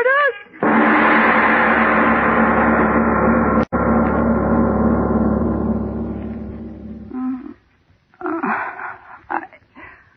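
A wailing cry cut off by a loud, sustained, gong-like swell of sound. The swell holds for about six seconds, breaks for an instant midway, and fades away, with a few faint short sounds near the end.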